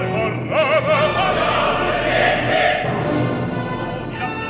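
Opera singing with orchestra: a voice with wide vibrato over the orchestra, then, from about a second in, a dense mass of chorus voices.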